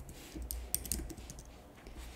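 Typing on a computer keyboard: a quick run of keystrokes in the first second, then a few scattered key presses.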